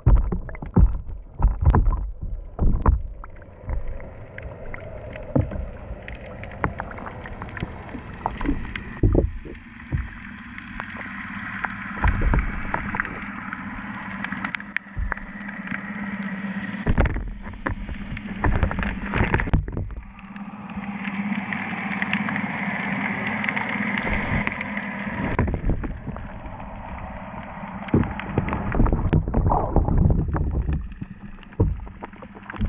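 Muffled underwater sound picked up by a GoPro in its housing: water surging and sloshing steadily. A quick run of knocks and bumps fills the first few seconds, with a few single clicks later.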